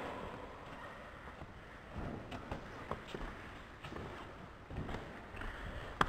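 Quiet hall room noise with a few faint, soft thuds and shuffles from bodies and feet moving on padded gym mats, clustered in the middle of the stretch.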